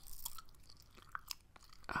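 Gum being chewed close to a microphone: soft, irregular wet smacks and clicks.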